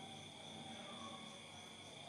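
Faint, steady high-pitched chirring of insects, an even drone with no breaks.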